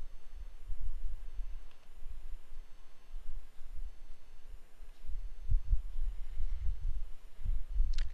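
Low, uneven rumble of microphone background noise, with no speech and no distinct events.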